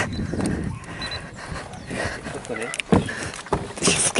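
Indistinct low voices with a few sharp knocks and clicks, the loudest about three seconds in.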